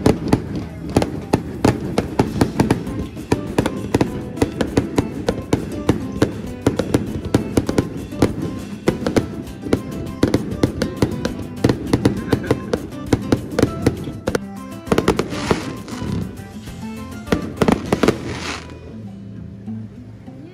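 Fireworks display going off, a dense run of irregular bangs and crackles that stops about a second and a half before the end, heard together with music.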